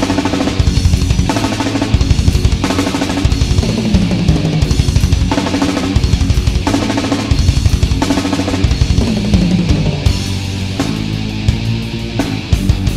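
Death/thrash metal band playing: fast, dense drum-kit pounding with rapid bass drum and snare under low distorted guitar. Twice a low note slides down in pitch, and the drumming thins a little near the end.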